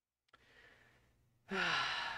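A man's breathy sigh, starting about one and a half seconds in, his voice sliding down in pitch as it fades.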